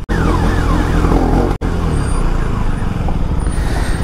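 KTM 390 Duke single-cylinder engine running at low speed in first gear as the bike slows in traffic, the sound cutting out briefly twice. The rider takes the engine's behaviour as a sign it is about to seize.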